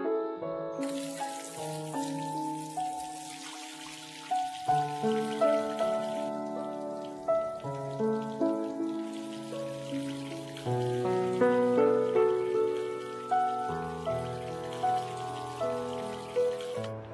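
Tap water running and splashing onto hands, starting about a second in, under a slow piano melody.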